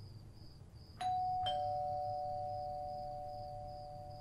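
Two-note ding-dong doorbell chime: a higher note about a second in, then a lower note half a second later, both ringing on and slowly fading.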